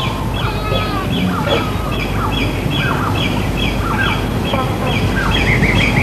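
Birds calling in the morning: a short high chirp repeated about twice a second, mixed with lower falling whistles. A denser twittering starts near the end. A steady low hiss lies underneath.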